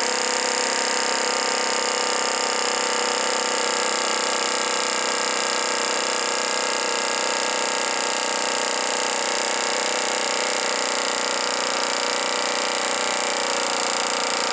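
A vintage Italian Z-motor compressed-air model engine running steadily on a 75 psi air charge, spinning a 7-inch propeller: an even whirring hum made of several steady tones.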